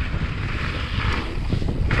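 Wind buffeting an action camera's microphone while a mountain bike descends fast on a gravel trail, with a steady low rumble and the rough hiss of tyres rolling over loose stones.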